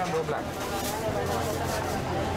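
Indistinct talking in the background, voices mixed together over a low steady hum, with no clear words.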